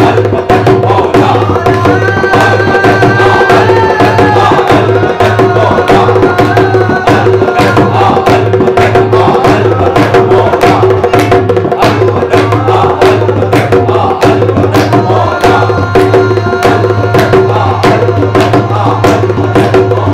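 A group of men singing together to a harmonium's held drone and a steady beat on a dholak, a two-headed barrel hand drum.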